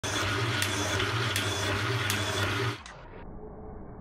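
Acorn (Atlas) 7-inch metal shaper running and cutting steel angle, with a steady low hum and a sharp click on each stroke of the ram, about one every three-quarters of a second. About 2.7 s in the sound drops abruptly to a dull, muffled low rumble as the recording switches to slow motion.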